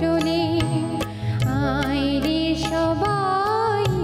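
A live ensemble performing a song in Indian classical style: a wavering melody line over a steady drone, with regular percussion taps.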